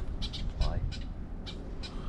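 Birds giving short, sharp chirps at irregular intervals over a low rumble of wind on the microphone.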